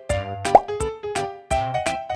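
Upbeat children's background music with a steady beat, and a single short rising 'bloop' pop effect about half a second in.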